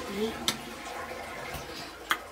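A woman's voice finishing a word, then a single sharp click about half a second in, over a low steady hiss.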